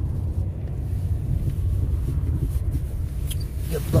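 A car's engine and road noise, a steady low rumble heard from inside the cabin as the car crosses a junction. A short spoken word comes near the end.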